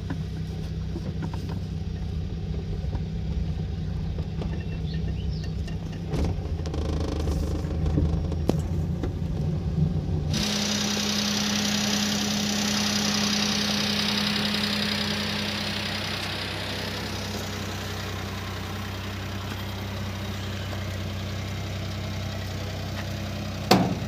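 Car engine running, heard from inside the cabin while driving on a rough dirt road. About ten seconds in the sound cuts abruptly to a car engine idling with a steady hum, with a high hiss over it that fades out a few seconds later.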